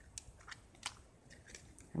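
A few faint clicks and light knocks of a small plastic ink pad case being picked up and handled.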